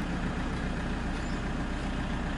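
Passenger van's engine running with a steady low hum, heard from inside the cabin.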